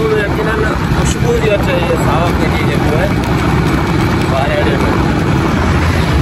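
Steady rush of wind and road noise on a moving motorcycle, with a man's voice talking over it and partly buried by it.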